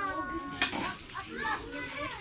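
Background chatter of several people, with children's voices calling out; one high voice holds a drawn-out call at the start.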